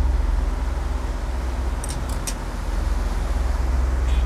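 Steady low rumble of a sailing catamaran under way on the open sea. About two seconds in come three light clinks of cutlery on plates.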